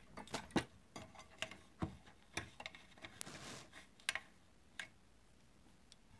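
Light, irregular clicks and taps of hands handling a model fire engine's hose reel and small aluminium hose nozzle, with a brief soft rustle midway; the clicks die away about a second before the end.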